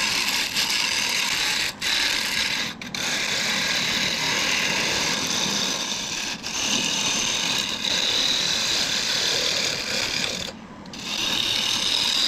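Scraper cutting a wood blank spinning on a lathe: a steady rasping scrape, broken by a few brief gaps and a longer lull near the end. It is a scraping pass to smooth out torn, textured grain.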